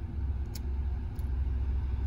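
Steady low rumble of a car, heard from inside the cabin, with a couple of faint ticks.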